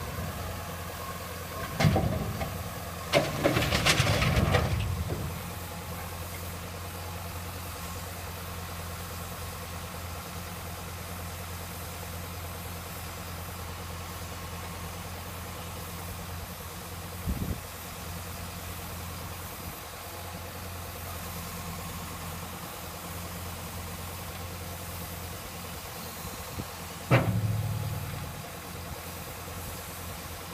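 Mercedes-Benz Unimog road-rail vehicle's diesel engine running steadily as it powers its hydraulic crane. Loud clanks from the crane's grapple handling its load come about two seconds in and again from about three to five seconds. A short knock follows near the middle, and a sharp bang near the end.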